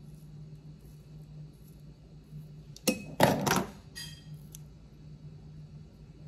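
Kitchen scissors clicking and clinking against a hard counter: a quick cluster of three knocks about three seconds in, followed by a brief metallic ring. A steady low hum sits underneath.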